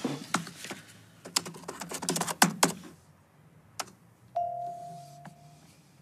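A quick run of sharp clicks and taps for about three seconds, like typing on a keyboard, then a single steady electronic tone held for about a second.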